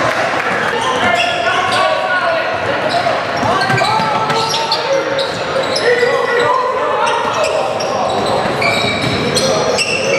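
Basketball game sound in a gym: a ball bouncing on the hardwood court amid overlapping voices of players and onlookers calling out, echoing in the hall.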